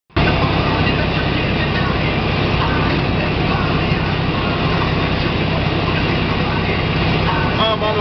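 Semi truck's diesel engine and road noise heard steadily inside the cab at highway speed, a constant low hum under a wide rush of tyre and wind noise.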